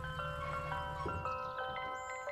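Ice cream truck chime jingle: a melody of bell-like notes stepping from pitch to pitch, over a low hum that fades out about halfway through.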